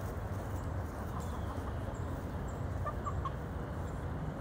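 Backyard hens clucking softly while foraging, with three short clucks in quick succession about three seconds in, over a steady low background noise.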